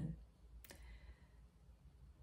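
Quiet room tone with a single sharp click about a third of the way in.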